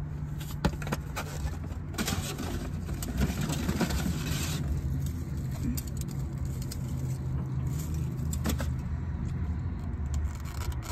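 Steady low hum of a car cabin with the engine idling, with scattered clicks, clatters and rustles of plastic takeout containers and utensils being handled.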